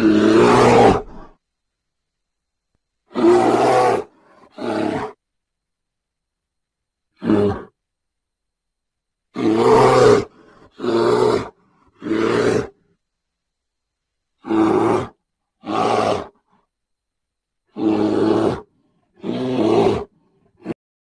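A series of eleven short, loud, low animal roars, each up to about a second long, separated by stretches of dead silence: an edited-in roar sound effect rather than a continuous live recording.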